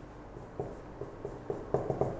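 Whiteboard marker drawing on a whiteboard: a few short, scratchy strokes and taps, coming closer together near the end.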